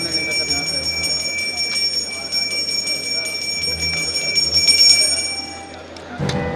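A puja hand bell rung rapidly and continuously, a steady high ringing made of many quick strikes. It is loudest just before five seconds in and fades out near the end.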